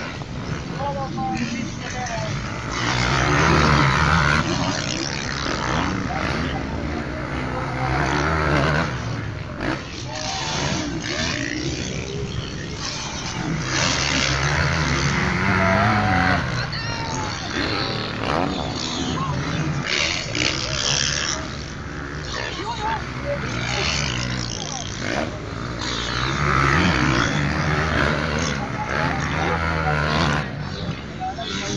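Motocross dirt bike engines revving hard and passing on the track, swelling loud and fading several times, over people talking in the crowd.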